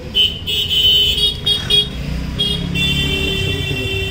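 Vehicle horn honking in street traffic: a quick run of short toots in the first two seconds, then a longer blast lasting about a second and a half, over a low traffic rumble.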